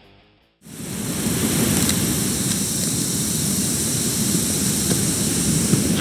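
Background music fades out, then a little under a second in a loud, steady rushing of water pouring over a dam cuts in and holds.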